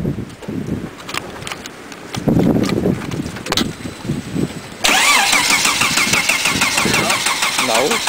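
Starter motor cranking a 1999 Volvo V70's 2.4-litre non-turbo five-cylinder engine on a cold start; a whine with rapid even pulses that begins abruptly about five seconds in.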